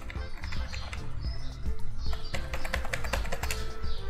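Background music with a stepping bass line, and a quick run of clicks through the second half.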